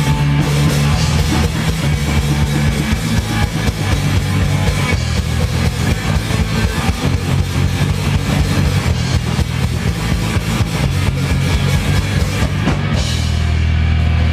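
Live rock band playing without vocals: distorted electric guitar, bass guitar and a drum kit with rapid, dense drumming. Near the end the drumming stops and a low note is held on.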